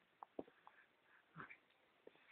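Near silence, with a few faint short clicks and small soft sounds spread through it.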